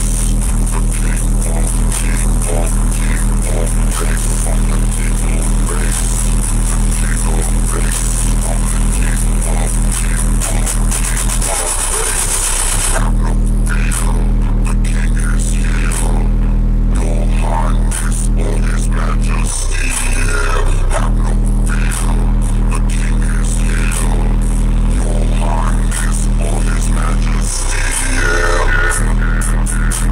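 Loud bass-heavy music played through a car audio system's ten-inch subwoofers, heard inside the truck cab. Sustained deep bass notes drop out briefly about three times, roughly eight seconds apart.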